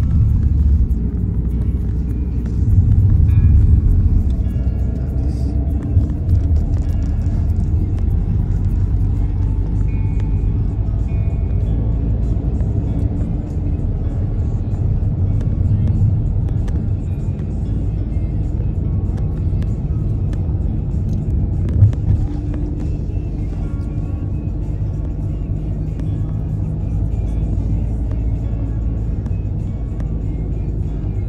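Steady low rumble of a car being driven, heard from inside the cabin, with music playing over it.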